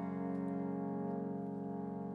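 A sustained instrumental chord held steady, with a slight fast wavering in loudness, in the pause between sung lines.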